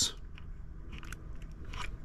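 Faint small clicks and rustles of wires being handled as a Futaba-style servo connector is pushed onto the carrier board's header pins, with a sharper click near the end.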